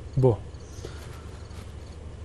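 A man's voice says one short syllable, then a pause filled with a steady low hum and a faint high-pitched hiss.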